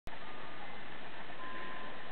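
Steady even hiss of background noise, with a faint thin high tone coming in about halfway through.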